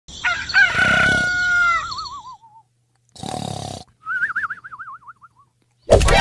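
Rooster crowing: a long crow that ends in a wavering, falling tail, then a second, shorter wavering call about four seconds in.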